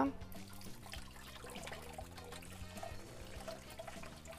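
A kitchen tap running quietly onto rice in a mesh sieve as the grains are rinsed by hand, under faint background music.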